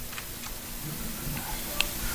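Quiet room tone with a few faint, isolated clicks.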